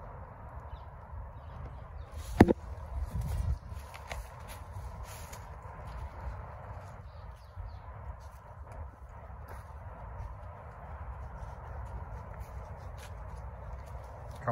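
Footsteps on a path covered in fallen leaves, with a steady low rumble on the microphone and a sharp click about two and a half seconds in.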